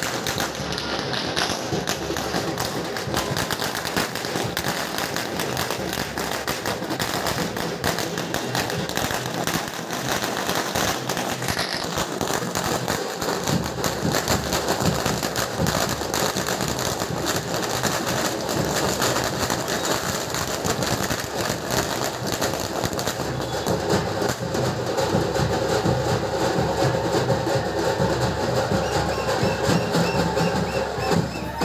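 A string of firecrackers going off in a rapid, continuous crackle of small bangs. Music comes up over it in the last several seconds.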